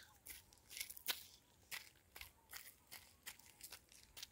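Faint, irregular clicks and crackles, about a dozen short ones scattered over the few seconds, the strongest a little after one second in.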